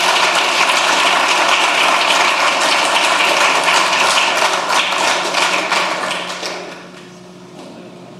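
Audience applauding, dense clapping that dies away about six to seven seconds in.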